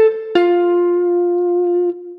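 Electric guitar playing the end of a descending C–A–F arpeggio: the A is still ringing, then about a third of a second in the F below it is picked and held, ringing steadily.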